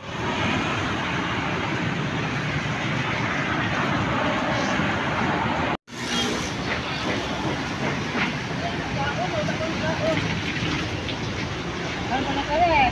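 Steady hiss of rain falling on a wet street, with passing traffic mixed in; it drops out for an instant about halfway through.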